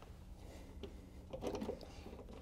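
A few faint light knocks as a metal master cylinder bracket is set against a truck's steel firewall, over a low steady hum.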